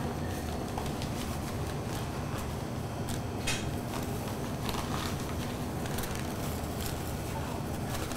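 Faint rustling and crinkling of white wrapping paper and thin plastic gloves as a nacatamal is folded up in its paper, over a steady background hum.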